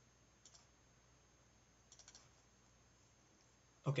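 A few faint clicks from computer input, about half a second and two seconds in, over a low steady hum.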